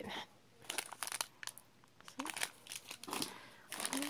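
Plastic snack packets crinkling in several short spells as they are handled and moved about in a cardboard box.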